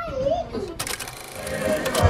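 A high voice with a sliding, sing-song pitch, then a short burst of rustling noise about a second in. A band's music starts near the end.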